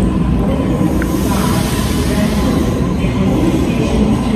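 Steady rumble and running noise of a moving commuter train, heard from inside the carriage.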